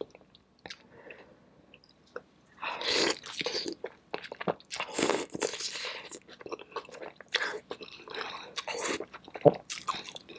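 Close-up eating sounds: a person biting into and chewing sauce-covered seafood, the wet bites and chews starting about two and a half seconds in after a quiet start. A single sharp click near the end is the loudest sound.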